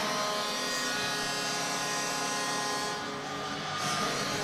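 Arena goal horn sounding after a goal: a steady buzzing tone that dips slightly about three seconds in.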